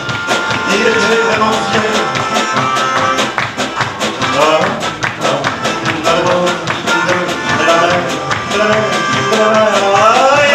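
A band playing a French pop song live: a nylon-string acoustic guitar strummed in a fast, even rhythm over drums and upright bass, with a melody line carried over the top.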